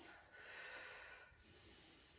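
Faint breathing: a single soft exhale lasting about a second, barely above room tone.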